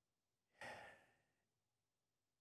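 A man's single sigh, one short breath out about half a second in, caught close on the microphone; the rest is near silence.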